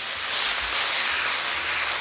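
Strips of sirloin steak, bell peppers and onions sizzling steadily in a stainless steel skillet as the pan is tossed over a gas flame.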